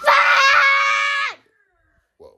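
A young child's single long, high-pitched shout, held steady for just over a second and dropping away at the end.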